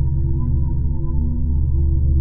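Low, steady drone of eerie soundtrack music: deep held tones with a few higher sustained notes over them, without pause or change.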